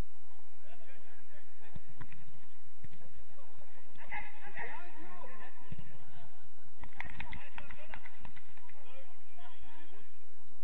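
Football players' voices calling out across the pitch during play, with a cluster of sharp knocks about seven seconds in.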